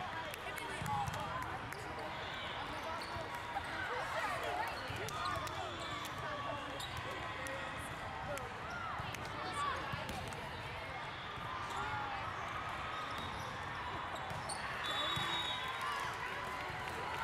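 Busy volleyball tournament hall: a steady babble of many overlapping voices, with balls being hit and bouncing and quick squeaks of shoes on the court. A short, high referee's whistle sounds near the end.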